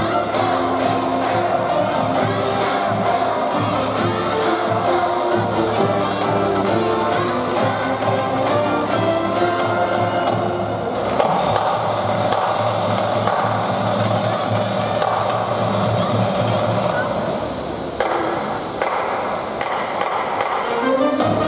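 A university cheering squad's brass band with drums playing a baseball cheering tune. The sound thickens about halfway through, then breaks off briefly near the end before the next tune starts.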